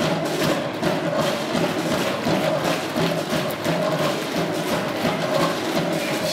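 Live band playing an instrumental passage driven by drums: quick, busy drum and percussion hits over a steady bass line, with no singing.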